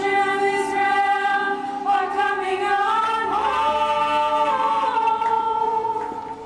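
Three women singing a song together, holding long notes.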